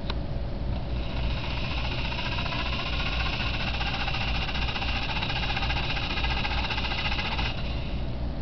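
Four small DC gear motors of a robot rover driving its wheels forward, a steady whine that starts about a second in after a click and cuts off suddenly near the end, as the program's timed forward run ends.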